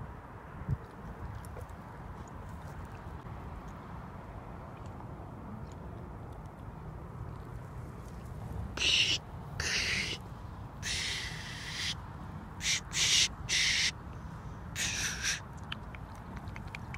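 A steady low rumble, then a string of about seven short, sharp hisses made by a person's mouth in imitation of a spray paint can spraying.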